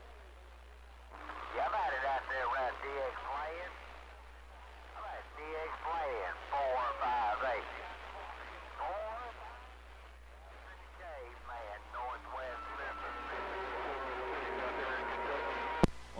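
A distant station's voice coming in weak and warbly through a CB radio's speaker, in bursts, over a steady low hum. Near the end there are a couple of faint steady tones, then a sharp click just before the local operator comes back on.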